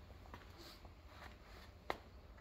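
Near silence: garage room tone with a faint steady low hum and one small click near the end.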